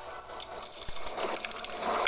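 Bite into a Pizza Hut Melt's thin, crispy crust and chewing, with faint crunching and small scattered clicks over a steady high hiss.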